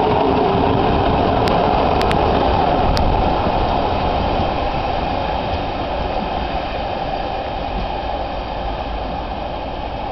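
A passenger train's coaches rolling away along the track, the rumble of wheels on rails slowly fading. A few sharp clicks come in the first three seconds.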